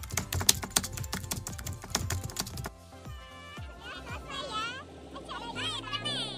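Rapid keyboard-typing clicks, an editing sound effect over background music, for about the first two and a half seconds. Then high voices call out over the music from about three and a half seconds in.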